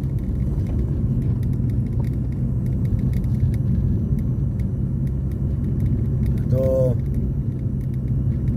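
Steady low road and engine noise heard inside the cabin of a moving car.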